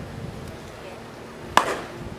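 Wooden baseball bat hitting a pitched ball: one sharp crack about one and a half seconds in, with a short ringing tail.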